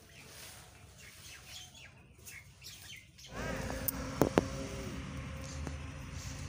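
Small birds chirping and tweeting over outdoor background noise. About halfway through, the background gets louder and a couple of sharp clicks sound close together.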